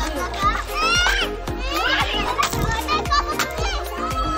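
Children's high-pitched shouts and calls, strongest about one and two seconds in, over background music with a steady beat.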